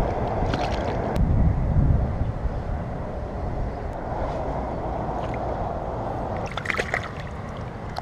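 Wind rumbling on the microphone over small waves lapping at the pond's edge, strongest about a second or two in. A brief clatter of sharp clicks and splashes comes near the end.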